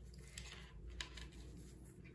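Faint handling sounds of bra strap elastic being fed through its ring and slider by hand: a soft rustle with a few light clicks, the clearest about halfway through.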